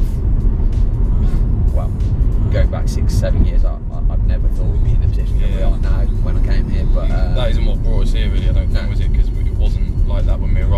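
Low, steady car road and engine rumble from inside a moving car's cabin, under conversation and background music.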